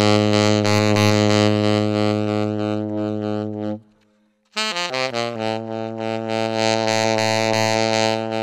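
Yanagisawa TW01 tenor saxophone, played with a Guardala Studio mouthpiece and Vandoren ZZ reed, holding a long low note near the bottom of its range that stops a little before halfway. After a short gap it plays a quick falling run of notes back down to the same long low note.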